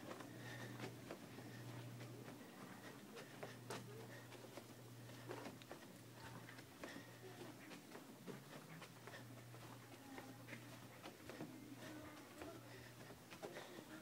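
Near silence: faint footsteps on carpet and scattered clicks and rustles of a handheld phone, over a low steady hum that drops out briefly a few times.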